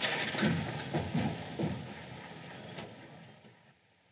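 Car engine as a car pulls away, with a few revs in the first two seconds, fading out to near silence near the end.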